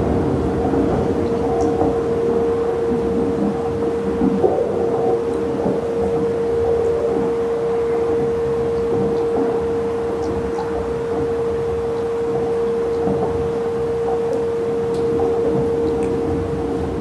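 Crystal singing bowl holding one steady, pure tone, over a dense, low rumbling wash from other sound-bath instruments.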